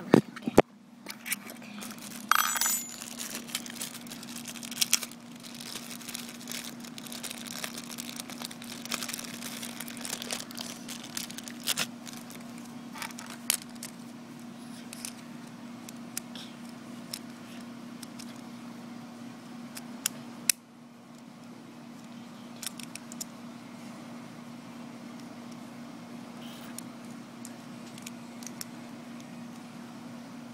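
Small clicks, taps and rustling of plastic Beyblade parts handled and fitted together by hand, busiest in the first dozen seconds, over a steady low hum. A sharper click comes about twenty seconds in.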